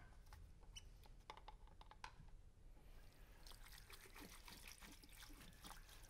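Faint sounds of hands at a small wall sink: a few small clicks and knocks, then water from the tap running and splashing from about three seconds in.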